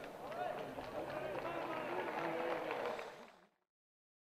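Voices talking, with the words not made out. The sound fades out to complete silence about three and a half seconds in.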